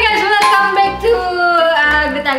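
A woman's voice in a drawn-out, sing-song greeting, holding long notes that glide up and down.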